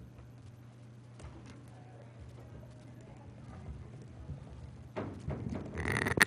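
Faint footsteps on a carpeted floor as a person walks up to a podium, over a steady low electrical hum from the room's sound system, with a louder burst of noise about five seconds in.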